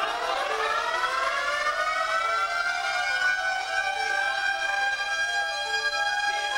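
A siren-like electronic tone from the stage show's sound system that glides upward for about two seconds and then holds a steady pitch.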